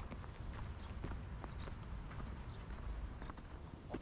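Footsteps on a packed-snow path at a walking pace, about two steps a second, over a low steady rumble.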